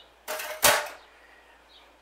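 A whisk knocked against the measuring jug after whisking custard: a short scrape, then one sharp clack about two-thirds of a second in.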